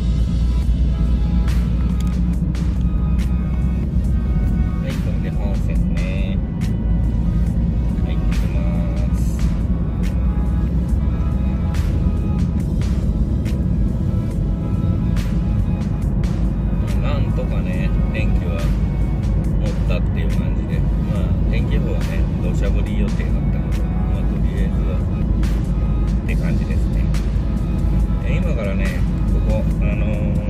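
Steady low road and engine rumble of a car driving at expressway speed, heard from inside the cabin, with music and a voice playing over it.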